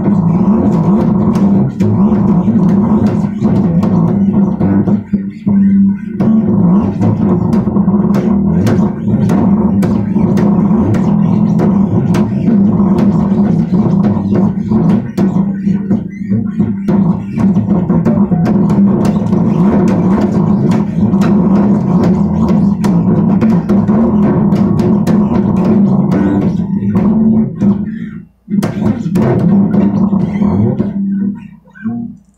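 Bass guitar being played, a continuous run of plucked notes with string clicks, with a brief break near the end.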